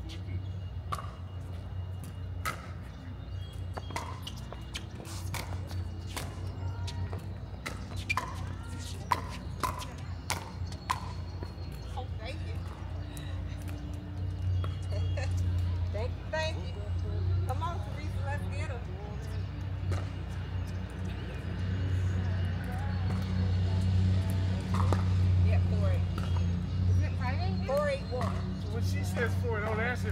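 Pickleball paddles striking a plastic ball back and forth in a rally: a run of sharp pops in the first ten seconds or so. A low steady hum runs underneath and grows louder in the second half, with some voices.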